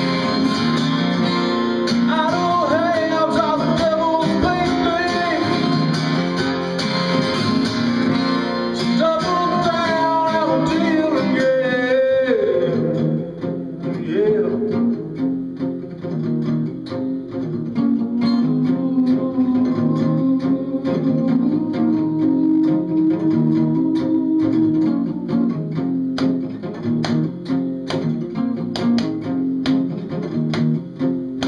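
Acoustic guitar playing an instrumental break of a song, a gliding lead melody over a steady chord rhythm for about the first thirteen seconds, then the rhythm part carrying on alone.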